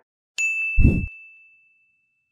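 Audio logo sting: one bright electronic ding that rings out and fades, with a short low bass hit under it just after it starts.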